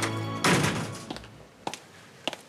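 A door slammed shut with a heavy thud about half a second in, over the tail of background music that ends there; a couple of faint clicks follow.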